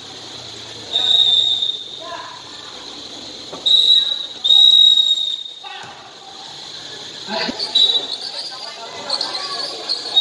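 A referee's whistle blown in four short blasts, one of them held for about a second, over the noise of a basketball game.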